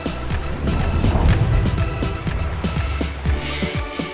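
Instrumental intro of an upbeat advertising jingle: a steady electronic drum beat over a deep, continuous bass.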